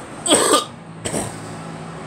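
A woman coughing twice while smoking a cigarette: a loud cough about half a second in, then a weaker one just after a second in.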